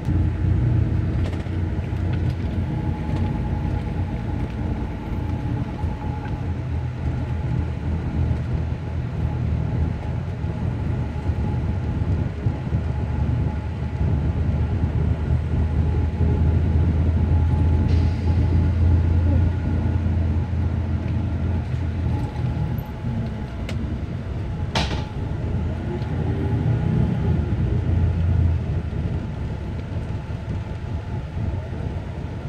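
Steady low engine and road rumble heard from inside a moving coach bus, with a faint steady hum. A single sharp click or knock comes near the end.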